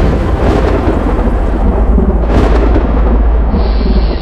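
Loud rolling thunder with a heavy low rumble, a brief whoosh a little past halfway, and a thin high steady tone coming in near the end.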